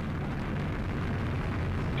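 Atlas V rocket's RD-180 first-stage engine running at liftoff thrust as the rocket climbs off the pad: a steady, low rumble of noise.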